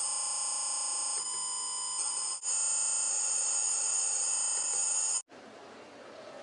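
OneBeep audio data signal: a document's binary data encoded as a dense stack of steady electronic tones for sending over FM/AM radio. The tone pattern shifts about a second in and breaks briefly near two and a half seconds, then cuts off suddenly about five seconds in, leaving faint background noise.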